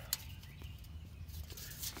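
Quiet outdoor background with a low rumble, and a single short click just after the start.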